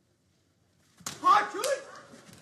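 Near silence, then about a second in the sudden slap of two sumo wrestlers' bodies colliding at the initial charge (tachiai), with a second smack just after and loud shouting over the clash.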